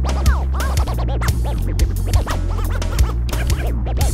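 Recorded rock music with turntable scratching: many quick rising-and-falling pitch sweeps over a steady bass line and drum hits.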